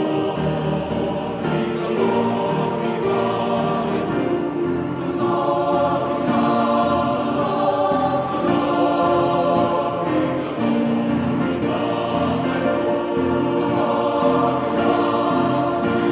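Background choral music: a choir singing slow, sustained chords.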